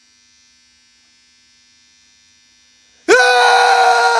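A faint steady hum, then about three seconds in a sudden loud, high yell held on one pitch.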